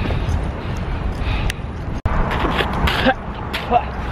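Wind rumbling over the microphone of a camera carried on a fast-moving bicycle, with a few short breath sounds from the rider in the second half. The sound drops out for an instant about two seconds in.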